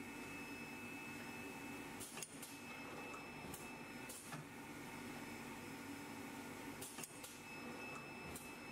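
Semi-automatic flat-bed screen printing machine running with a faint, steady hum. A few sharp clicks come about two seconds in, around four seconds and near seven seconds as the squeegee carriage strokes and the screen frame moves.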